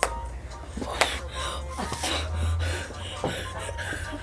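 A raw egg smashed hard against a boy's head, heard as one sharp crack about a second in.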